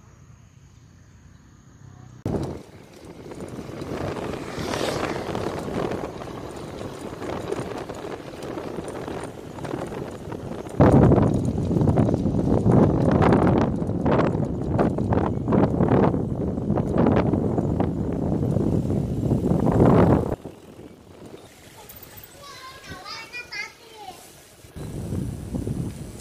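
Wind buffeting the microphone of a camera carried on a moving bicycle: a rough rushing noise that grows loud about eleven seconds in and drops off suddenly about twenty seconds in.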